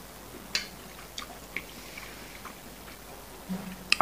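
A person chewing a mouthful of instant noodles, with a scattering of small wet mouth clicks. A short low hum comes just before the end.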